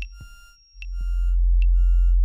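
Live-coded electronic music. A deep sine-wave bass drops out briefly about half a second in and swells back, under sustained high square-wave tones and short, clicky percussive hits that sweep down in pitch.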